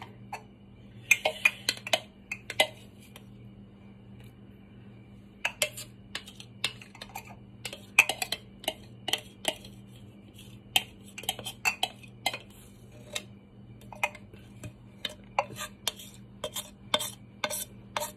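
A metal knife blade scraping and tapping inside a food chopper bowl, an irregular run of sharp clicks and short scrapes as thick black garlic paste is scraped out.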